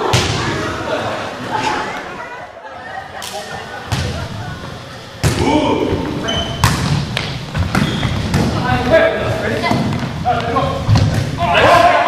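Volleyball being struck back and forth by players' hands and arms in a large gym: a series of sharp thuds at uneven intervals, with people talking around them.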